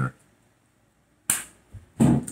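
A single sharp clack about a second and a quarter in, fading quickly, then a fainter short knock just before speech resumes.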